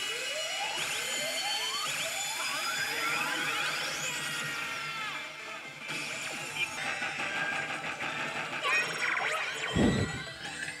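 Yoshimune 3 pachislot machine playing its electronic music and effect sounds, with several rising sweeps in the first half and a busier run of effects near the end.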